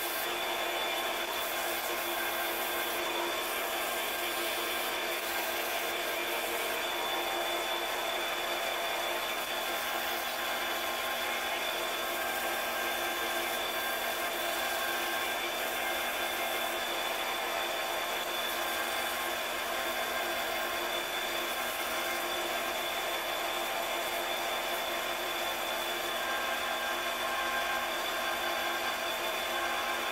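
Grizzly mini lathe running steadily with an even motor whine, spinning a brass ring while sandpaper is held against it, rubbing as it polishes the ring's surface.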